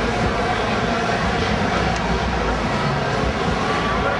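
Loud, steady street noise: traffic rumble mixed with a crowd of people on the street.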